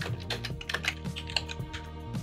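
Computer keyboard keystrokes: about seven scattered clicks, with soft background music running under them.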